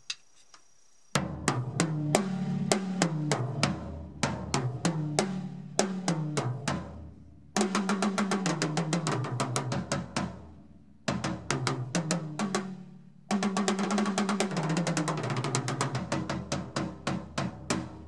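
Acoustic drum kit toms played in four quick runs around the kit, each run stepping down in pitch from the smallest tom to the floor tom, showing the pitch intervals between the tuned drums.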